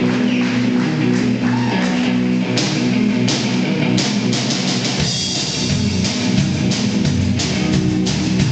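Live blues-rock band playing without vocals: amplified electric guitars over a drum kit. The drums keep a steady beat of cymbal and snare hits that stands out more clearly from about two and a half seconds in.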